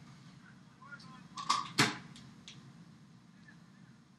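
Faint poolside game ambience during a water polo match, with a brief distant shout and one sharp crack or smack a little under two seconds in.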